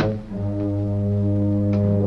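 Film score: a low brass chord held steadily, after a brief click right at the start.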